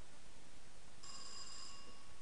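A single bell-like ring of under a second, starting about a second in and fading out, over faint room noise.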